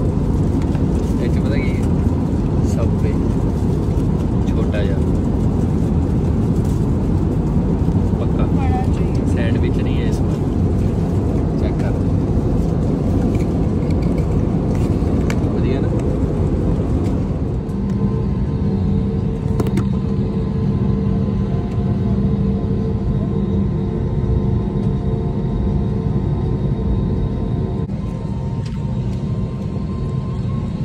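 Airliner cabin noise: a steady low rumble from the engines and air system, with people talking in the cabin. About two-thirds of the way through, a steady hum with a few distinct pitches sets in on top of the rumble.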